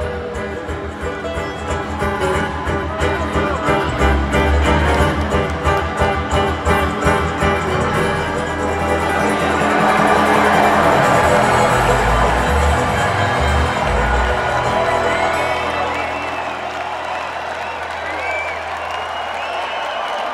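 A bluegrass string band, fiddle, guitars and bass, plays the closing bars of a song with a driving picked rhythm, then an arena crowd cheers and applauds, swelling about halfway through, with whoops and whistles rising above it near the end.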